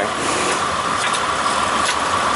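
2002 Mitsubishi Montero Sport engine idling steadily, with a few faint ticks scattered through the idle.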